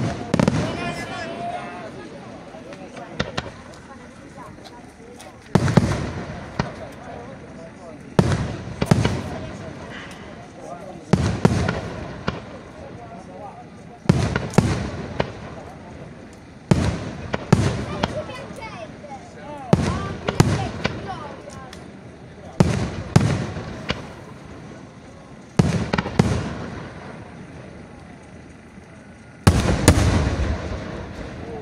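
Aerial firework shells bursting, a loud report every few seconds, often two in quick succession, each followed by a long echoing decay.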